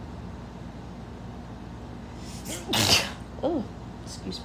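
A woman sneezes once, about three seconds in: a short voiced build-up and then a loud, sharp burst of breath, followed half a second later by a brief voiced sound, over a steady low hum.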